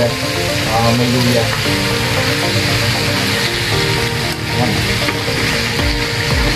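Chicken feet and heads sizzling in a wok while a metal ladle stirs them, over background music.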